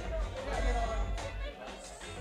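Live band music: steady low bass with a voice over it.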